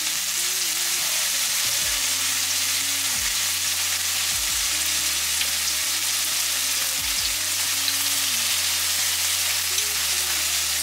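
Food frying in a pan on the stove, a steady sizzle, with the food starting to get burned.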